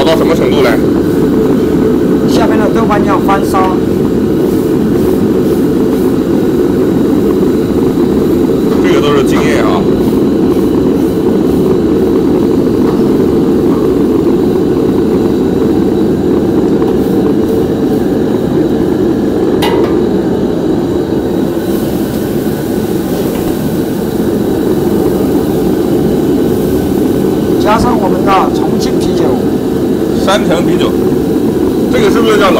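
Steady, loud low roar of a commercial gas wok burner at full flame while a wok of chili and bean-paste base fries, with a single metal clink about twenty seconds in. A few brief voices come and go.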